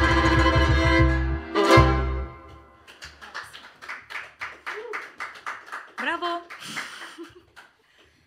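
An acoustic Romanian lăutari band (violin, double bass, țambal and accordion) plays the last bars of a piece and stops on a final chord about two seconds in. Scattered clapping follows, with a few short calls, dying away near the end.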